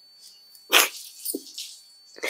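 A woman crying: a sharp, sobbing intake of breath about three-quarters of a second in, then a short whimpered sob about half a second later.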